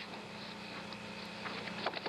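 Steady hiss and low hum of an open air-to-ground radio channel between transmissions, with a few faint short blips near the end.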